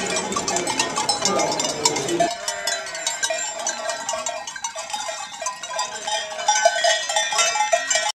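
Room ambience with voices and clinking for about two seconds, then a sudden change to sheep bells clanking irregularly in a steady jangle.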